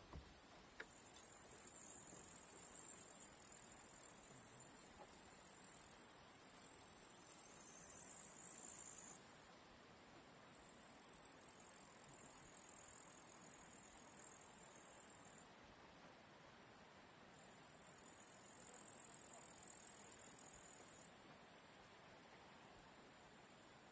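Crickets shrilling in a high, hissing buzz that runs in spells of several seconds with short pauses between, stopping near the end.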